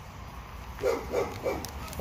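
A dog barking three short times in quick succession, starting a little under a second in.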